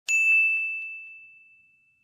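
A single high bell-like ding, struck once just after the start and ringing out as it fades away over about two seconds, with a few faint ticks beneath it in the first second.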